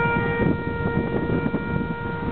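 A military brass call on a bugle or similar horn holding one long, steady note that stops near the end, over a low background rumble.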